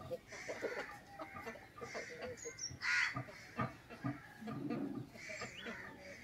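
Chickens in a flock of roosters and hens clucking on and off in short calls, with one louder, short call about halfway through.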